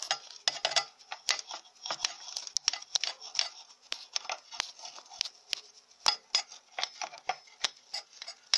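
Brush scrubbing thread lint and residue out of the metal bobbin race of a sewing machine: quick, irregular scratchy strokes and light clicks on metal, several a second.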